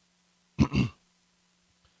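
A man clearing his throat once, a short two-pulse rasp about half a second in.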